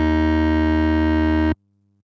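A sampled synthesizer note, the D#2 zone of a multi-sample recording, played back as one steady sustained tone. It cuts off abruptly about one and a half seconds in, where the sample ends.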